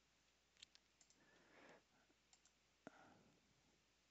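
Near silence, with a few faint clicks of a computer mouse.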